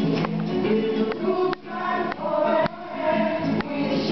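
A song sung by several voices together with instrumental backing, with a few sharp strikes in the accompaniment.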